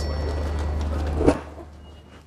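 Steady low rumble of a railway platform beside a parked train. About 1.3 s in it ends abruptly, and a much quieter train-interior background follows.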